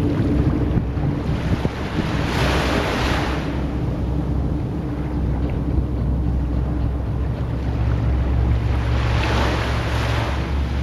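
A steady low motor drone with wind and rushing water over it, the wash swelling louder twice: the sound of a boat under way.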